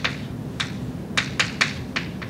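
Chalk tapping and clicking against a blackboard as equation symbols are written: about five short, sharp taps at an irregular pace, over a steady low room hum.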